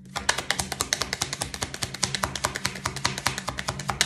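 A deck of tarot cards being shuffled by hand, an overhand shuffle giving a fast, uneven run of crisp card clicks, about ten a second.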